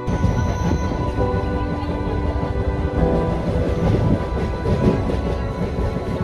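Passenger train running, heard from inside a coach at an open barred window: a dense, rough rumble of wheels and rushing air. Calm background music plays over it.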